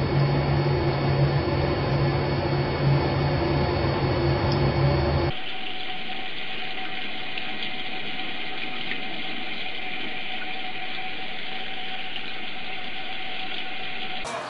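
A steady low hum mixed with noise for about the first five seconds, then an abrupt cut to the steady hiss of a tap running into a sink.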